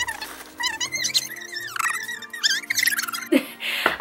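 A woman's high-pitched excited squeals as she tears open gift wrap, with paper crinkling near the start and music underneath.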